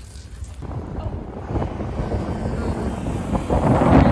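Outdoor wind on the microphone mixed with road traffic: a low, even rumble that sets in about half a second in and grows steadily louder.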